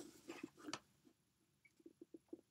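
Faint chewing of a gummy fruit snack: a few soft mouth sounds in the first second, then near silence.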